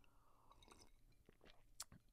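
Faint swallowing sounds of a person drinking water from a glass close to the microphone, with a small click near the end; otherwise near silence.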